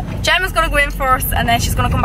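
A woman talking inside a car, with a low steady rumble from the car underneath her voice.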